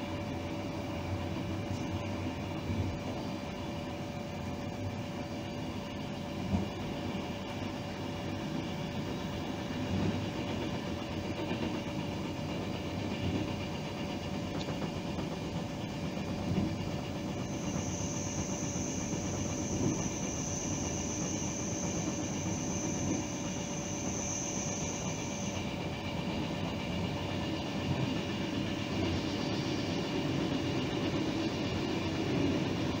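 Running noise of an electric train heard from inside the train, a steady hum with scattered brief knocks from the wheels on the track. A high, steady whistling tone comes in past the middle, lasts about eight seconds, then stops.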